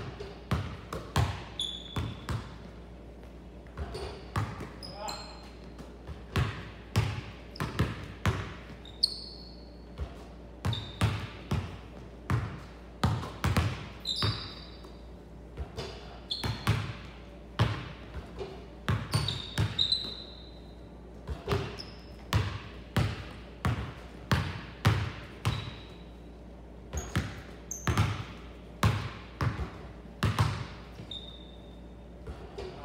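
A basketball bouncing on a hardwood court over and over in an uneven rhythm during a shooting drill, with shots off the backboard. Sneakers squeak in short, high chirps on the wooden floor.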